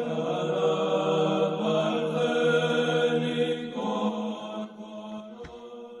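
Background music of slow sung church chant, stacks of long held notes, fading down over the last second or two.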